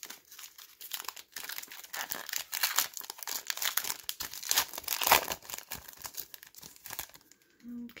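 Foil wrapper of a Panini Mosaic basketball card pack crinkling as it is handled and torn open: a dense run of crackles, loudest about five seconds in.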